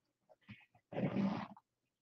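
A man's short wordless vocal sound, a grunt or murmur lasting under a second, about a second in, preceded by a faint tick.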